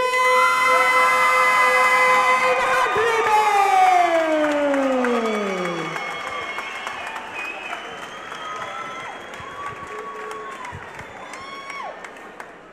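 Ring announcer drawing out the winner's name in one long held shout that slides down in pitch and ends about six seconds in, over crowd cheering and applause. The cheering and applause carry on more quietly after the call ends.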